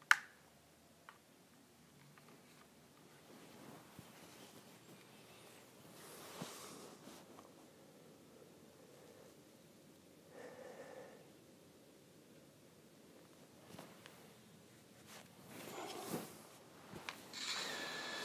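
Quiet room with faint, scattered handling and rustling noises as a small drone is set down and its controller picked up, and a click at the very start.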